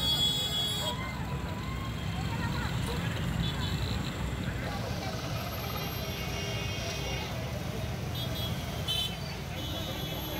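Busy street traffic: motorcycle and scooter engines running in a steady low rumble, with people talking and a few short horn beeps.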